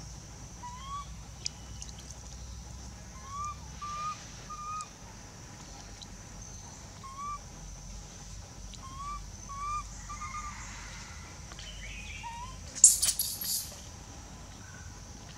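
A baby long-tailed macaque cooing: short rising calls, each a fraction of a second, coming singly or two or three in a row. A steady high insect drone runs behind. Near the end a brief, loud rustling scuffle stands out as the loudest sound.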